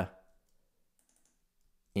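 A few faint computer keyboard clicks in an otherwise near-silent gap, as a line of code is typed, with a man's voice just before and after.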